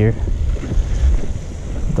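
Wind buffeting the microphone outdoors, a steady low rumble with no distinct events.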